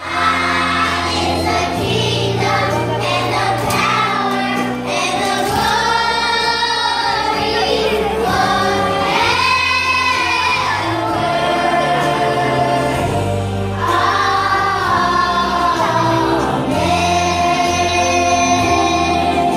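A group of young children singing a song together over musical accompaniment with a steady bass line.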